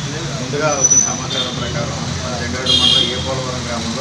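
A man speaking in Telugu over a steady background of road traffic. A vehicle horn sounds briefly about three seconds in.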